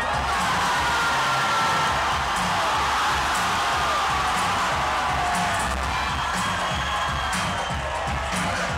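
A crowd cheering and shouting over loud dance music with a steady beat. The cheering swells at the start and slowly dies down over the next several seconds.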